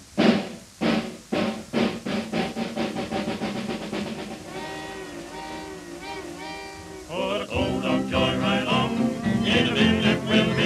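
Early-1930s jazz dance band imitating a steam train pulling out: loud chugging strokes that start slow and speed up, then a held, wavering chord like a train whistle, before the full band takes up the tune about seven seconds in.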